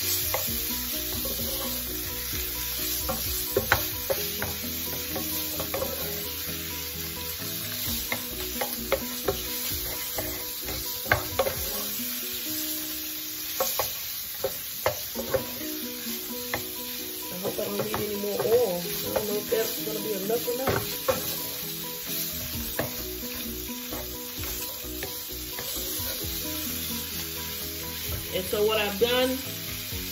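Shrimp and ginger sizzling in oil in a skillet on high heat, stirred with a wooden spoon that scrapes and taps against the pan in scattered clicks.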